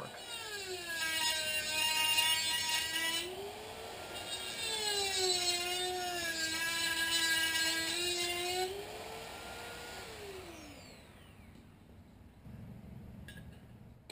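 A Dremel rotary tool grinding a slit into the pressed-in copper bushing inside a Showa fork's outer tube. Its high whine drops in pitch when pressed into the cut and climbs when eased off, twice over. About ten seconds in it winds down and stops, leaving a few faint clicks.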